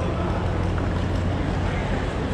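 Bus terminal departure hall ambience: a steady low hum under a general background din.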